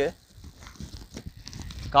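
A brief lull between a man's speech, filled by faint wind and road noise from a bicycle rolling along a paved road.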